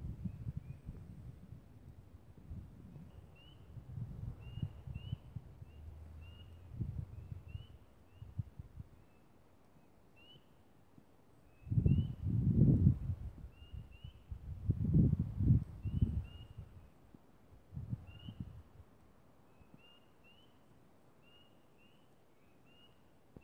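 Spring peepers calling: a scattered chorus of short, rising peeps from several frogs. Two spells of low rumbling noise on the microphone come a little past the middle and are the loudest sound.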